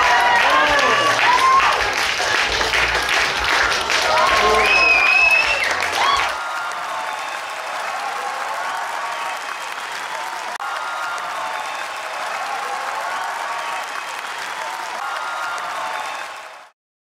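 Audience applauding with cheers and whoops. About six seconds in it cuts off abruptly to a quieter, steady background.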